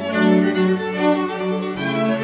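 String quartet playing live: violins and cello in held, bowed notes, with the low cello line stepping down in pitch near the end.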